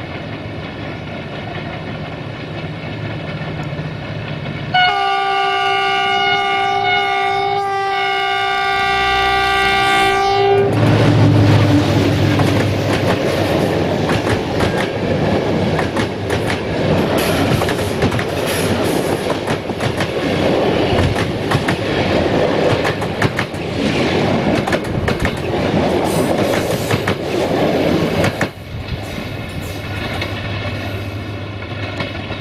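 Diesel-hauled passenger train: a low engine hum as the locomotive approaches, then its multi-tone horn held for about six seconds. The locomotive passes close, and the coaches' wheels clatter over the rail joints until the sound drops suddenly near the end.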